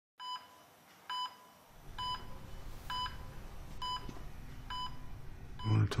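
Hospital bedside patient monitor beeping at a steady pulse: short, clear high beeps a little under one a second, six in all. A low room hum comes in under the beeps after about two seconds.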